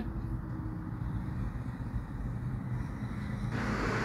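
Steady low background rumble with faint hiss and no speech, growing a little brighter near the end.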